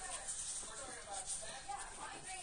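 Newborn American Pit Bull Terrier puppies making short, high squeaks as they nurse, with a faint rustle of newspaper bedding.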